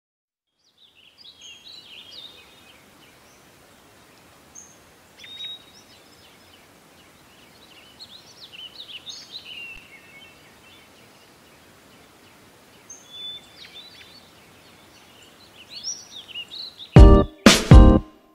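Birds chirping and twittering faintly, in scattered short calls over a quiet hiss. About 17 seconds in, a pop song cuts in loudly with a few sharp, punchy hits.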